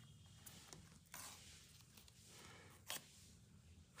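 Near silence with faint handling noises from the sealed cardboard iPhone box: a soft rustle about a second in and a brief click-like scrape near three seconds as it is turned in the hands.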